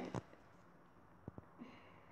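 Quiet room tone with a short click just after the start and two faint clicks a little past a second in.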